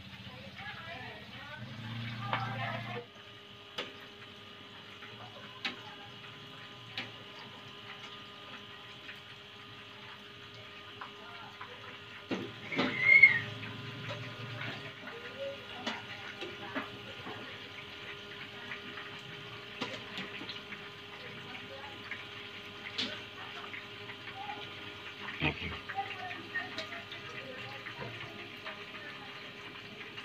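Tofu pieces frying in hot oil in a wok, a steady sizzle with scattered clicks of utensils against the pan and one louder clatter a little before halfway. In the first few seconds a spatula stirs a shredded-vegetable filling in a plastic bowl.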